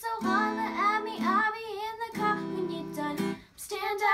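Young girls singing a pop song to a strummed nylon-string classical guitar, with a short pause in the strumming and singing about three and a half seconds in.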